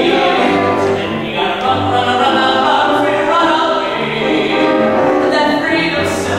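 A small vocal ensemble singing a gospel-style show tune live, accompanied on grand piano.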